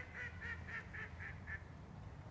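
Ducks quacking on a river: a quick series of about seven quacks, about four a second, growing fainter and ending about one and a half seconds in.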